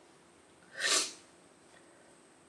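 A woman sniffing once, sharply and briefly, through her nose while crying.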